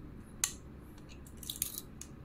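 Faint clicks of a small screwdriver turning out the screws that hold the processor module to the carrier board: one sharp click about half a second in, then a quick cluster of light ticks near the end.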